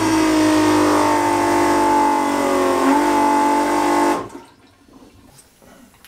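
Electric pump toilet on a sailing yacht flushing while its button is held: the pump motor runs with a steady two-tone whine that sags slightly in pitch, pumping the bowl out toward the holding tank, then stops suddenly about four seconds in.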